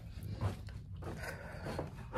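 A person breathing hard, winded after climbing a lot of stairs, with soft rustling from a handheld phone.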